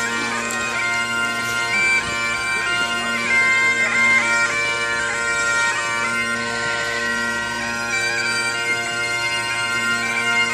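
Great Highland bagpipes playing a tune: a melody of quickly changing notes over the pipes' steady, unbroken drones.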